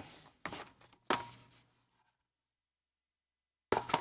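Short knocks and scuffs of cardboard reel-to-reel tape boxes being picked up and handled: a soft one about half a second in, a louder one about a second in, and another just before the end.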